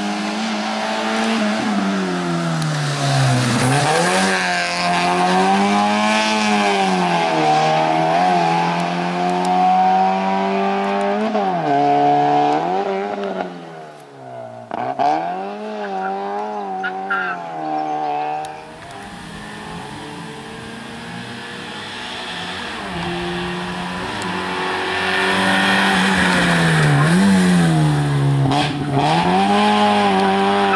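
Small hatchback race car driven hard through a slalom: its engine revs rise and fall over and over as it brakes and accelerates between the cones. The revs drop sharply about halfway, the engine runs quieter for a few seconds, and it climbs loud again near the end.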